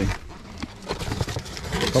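A small cardboard box being handled and its flaps pulled open: soft rustling and scraping of cardboard with small clicks.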